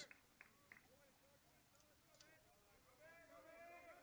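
Near silence: faint ballpark ambience, with a faint distant voice toward the end.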